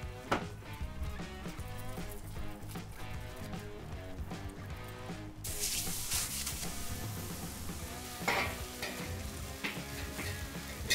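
Vegetarian burger patties sizzling on the hot steel griddle plate of a round fire-ring grill, the sizzle starting suddenly about halfway through as the patties go down, over background music.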